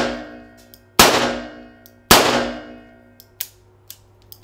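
Enfield No. 2 .38 top-break revolver fired one-handed: the echo of one shot rings at the start, then two more shots come about a second apart, each ringing and echoing off the range's concrete walls for about a second. Two faint metallic clicks follow near the end.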